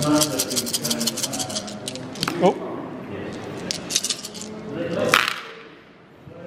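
A handful of over a dozen dice thrown onto the tabletop, clattering and tumbling for about two and a half seconds, with one sharper clack about five seconds in.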